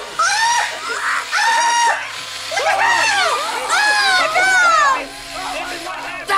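A person screaming repeatedly: a string of high-pitched screams that rise and fall in pitch, with short breaks between them.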